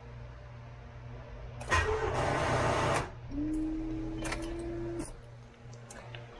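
Attempt to start a car on a weak, run-down battery: a burst of noise about two seconds in, lasting just over a second, then a steady hum for under two seconds; the engine does not catch.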